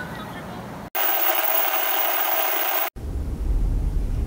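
Burst of loud hissing static, a video-glitch transition effect, that cuts in sharply about a second in and cuts out just as suddenly about two seconds later, followed by a low steady rumble.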